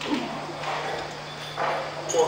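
A short pause in a man's speech over a low steady hum, with the voice coming back in near the end.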